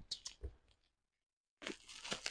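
Faint crinkles and small clicks of a bubble-wrapped package being handled, broken by about a second of dead silence in the middle.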